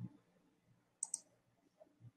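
Two faint, sharp clicks in quick succession about a second in, over quiet room tone, preceded by a soft low thump at the very start.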